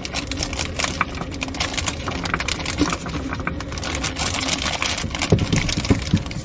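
Plastic bag of frozen dumplings crinkling and rustling in the hands as it is opened and tipped over the pot, a dense run of irregular crackles, over a steady low hum.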